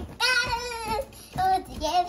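A child singing in a high voice: one long held note, then a shorter one.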